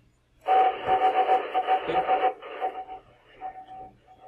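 Amateur-radio data-mode audio from FLDigi sending a short test message, heard through a radio's speaker: a rushing hiss with a single tone pulsing on and off in it. It starts about half a second in, is loudest for the first two seconds, then goes on weaker and broken.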